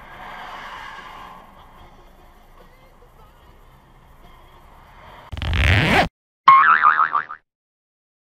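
Faint steady road noise, then about five seconds in a short loud noisy burst. After a brief gap comes a cartoon 'boing' sound effect whose pitch wobbles for under a second.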